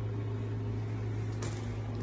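A steady low hum, like a room appliance running, with one faint click about one and a half seconds in.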